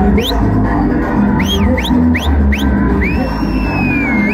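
Loud dance music with heavy bass, played over loudspeakers for stage dancing. Over it come a string of short, sharp rising whistles, then one long held whistle near the end.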